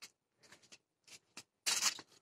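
Grapevine leaves brushing and rustling close against the microphone: a few faint brief scrapes, then a louder rustle near the end.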